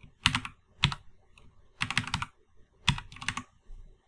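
Computer keyboard typing, keystrokes coming in about four short quick bursts as an IP address is entered into a form field.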